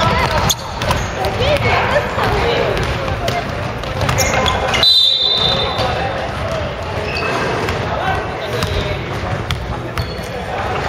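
Basketballs bouncing on a wooden gym floor during play, amid indistinct shouting and chatter from players and onlookers in a large hall.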